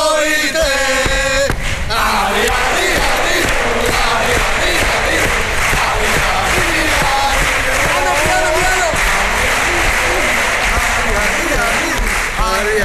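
A cuarteto's male voices singing a carnival tune together. About a second and a half in, a large theatre audience joins in, and the many voices sing along as one crowd.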